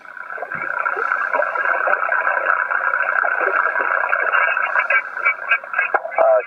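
Amateur HF transceiver's speaker giving out steady band noise and static, cut off sharply above about 2.7 kHz, rising in the first second as the receiver opens. A weak station's voice comes through faintly in the noise, clearer near the end. This is the noisy band the operator describes, full of electrical noise and static crashes.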